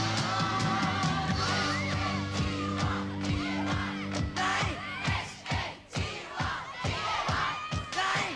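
Glam-pop band music with a studio audience of young fans screaming and yelling over it. About halfway in, the held chords drop away, leaving drumbeats under a crowd of high, wavering screams.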